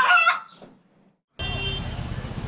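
An inserted comic sound effect: a short run of high-pitched calls that ends less than half a second in and fades away. Dead silence for about a second follows, then the steady hum of street traffic comes back.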